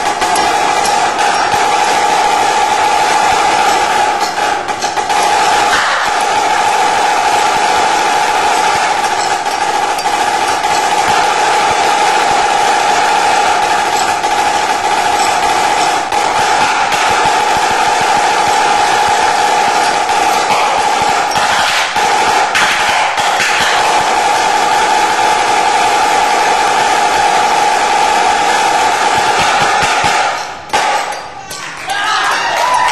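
Yamaha marching snare drum played solo with sticks: a continuous, loud stream of fast rolls and rudiments over the drum's steady high ring.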